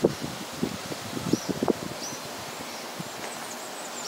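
Steady outdoor background noise with a few short, faint, high bird chirps, mostly in the second half. There are soft knocks in the first half.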